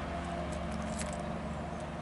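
A steady, even mechanical hum, like an engine or motor running at a constant speed, with a few faint ticks.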